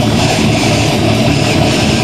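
Hardcore band playing loud in rehearsal: a dense, distorted wall of guitar and bass noise over drums, with no let-up in level.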